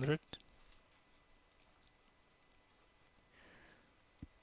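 One sharp click of computer input, a keystroke or mouse button, about a third of a second in, then faint room tone with a few very faint ticks and a soft hiss near the end.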